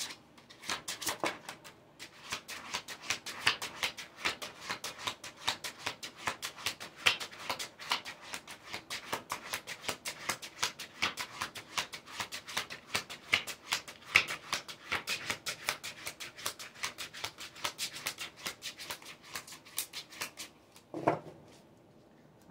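A tarot deck being shuffled by hand: a quick, continuous run of card slaps and flicks, several a second, with a brief pause about two seconds in. The shuffling stops shortly before the end.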